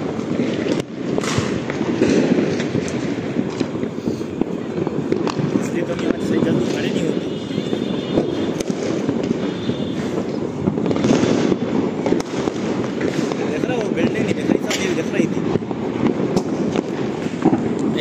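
Many firecrackers going off at once, a continuous crackle of small sharp bangs over a steady din.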